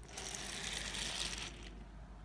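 A small plastic toy engine pushed by hand rolls quickly across a wooden floor, its wheels rattling along the boards for about a second and a half before fading out.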